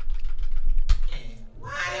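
Computer keyboard and mouse clicks with low thumps from the desk carried into the microphone, and one sharp click about a second in.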